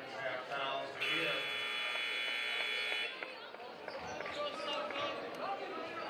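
Basketball gym scoreboard buzzer sounding once, a steady horn-like tone lasting about two seconds, over crowd chatter.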